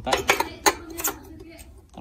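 A few sharp metallic clicks and knocks in the first second as a fuel-tank cap is pushed and fitted onto the filler neck of a motorcycle's steel fuel tank, then only light handling.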